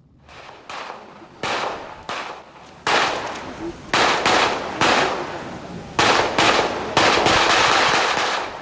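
A volley of gunfire: irregular shots, about two or three a second, each trailing an echo. It starts faint and grows louder and more rapid from about three seconds in.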